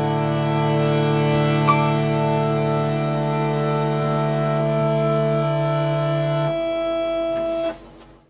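A small keyboard organ holds a final sustained chord while an archtop guitar adds a light plucked note; the chord's notes drop out one by one over the last few seconds and the piece ends just before the close.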